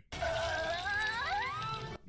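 Door creaking open, played as a comedy sound effect: one drawn-out creak of several wavering pitches that glide upward in the second half, then cut off abruptly.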